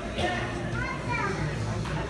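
Background chatter of children's and adults' voices overlapping in a gymnasium, with no words clear.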